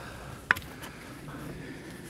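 Faint outdoor background with one short, sharp click about half a second in.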